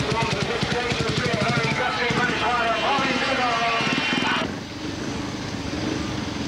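Speedway motorcycle's single-cylinder engine firing and revving after a push start. It drops away about four and a half seconds in.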